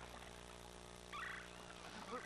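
A bird gives a short, rapid, rattling call about a second in, over faint steady background ambience in the film's jungle soundtrack.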